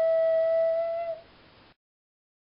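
Songbird Ocarina ocarina holding one long steady note, which ends a little over a second in.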